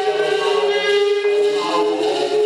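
Music of sustained, overlapping sung notes forming a choir-like drone, with the pitches shifting about every second.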